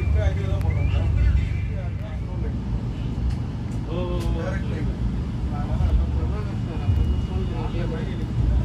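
Steady low rumble inside a Vande Bharat electric train coach as it rolls slowly, with voices talking over it.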